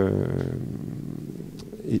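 A man's drawn-out hesitation 'euh', trailing off low and rough for over a second, then the word 'et' near the end.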